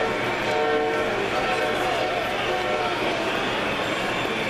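A model train's electronic sound system sounding its horn in several held blasts over the steady chatter of a crowded hall.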